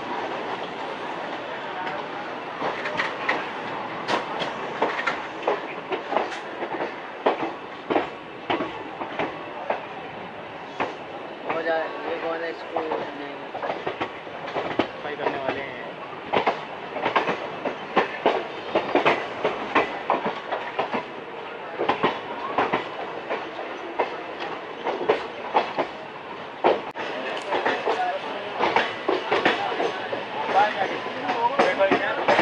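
Indian Railways express coach running on track, heard from the open coach doorway: a steady rolling rumble broken by many sharp, irregular clacks as the wheels cross rail joints and the points of a station yard.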